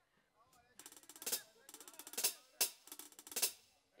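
A live band's drum struck in short rolls and sharp hits, starting about three-quarters of a second in, with the loudest strikes in the second half.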